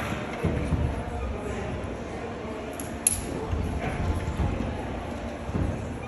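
Indistinct background voices echoing in a large indoor climbing hall, with a single sharp click about three seconds in and a few dull low thumps.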